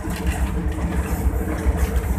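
Cab noise of a PHA-20 diesel-electric locomotive under way: a steady low engine drone with a rumbling haze from the running gear on the track.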